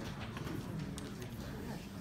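Chalk tapping and scraping on a blackboard as a solution is written out: a few short sharp taps over a low room murmur.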